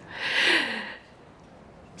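A woman's short breathy laugh, a sharp breath out close to a headset microphone, lasting under a second.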